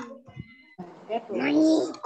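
A child's voice over a video call, calling out an answer to a quiz question.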